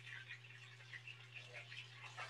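Faint crackle and scattered small pops of battered mushrooms frying in hot oil in a pan, over a steady low hum.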